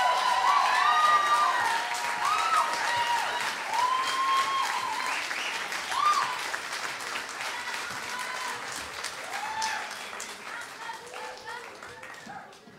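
Concert audience applauding, with cheering voices and whoops over the clapping; the applause slowly dies down over the last few seconds.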